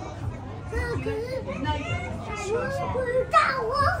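Children's voices chattering and calling out, with one child shouting loudly in Mandarin near the end.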